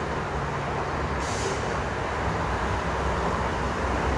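Street traffic: the steady low rumble of a heavy vehicle's engine, with a short hiss about a second in.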